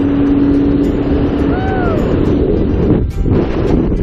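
Wind buffeting the camera microphone during a tandem parachute descent under an open canopy, a heavy low rumble throughout. A brief rising-then-falling tone sounds about a second and a half in.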